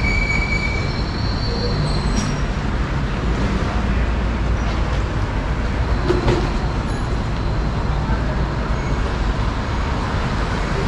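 Steady street traffic noise with a deep rumble, with a short high squeal near the start and a couple of brief clicks.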